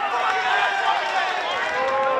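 Several voices shouting and calling over one another from players and spectators at a football match, with general crowd noise; no one voice stands out.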